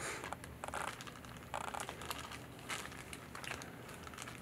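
Faint crinkling of a plastic zip-top bag handled by gloved hands, in short scattered rustles, as bean seeds are put inside against a damp paper towel.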